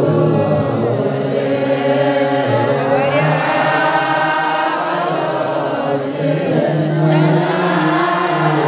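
Eritrean Orthodox liturgical chant: a group of voices sings in unison, holding long steady notes that step from one pitch to the next.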